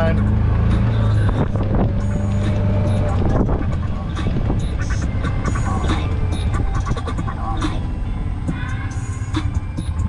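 Golf cart driving over the course: a steady low rumble, with small knocks and rattles from the cart as it goes over the ground.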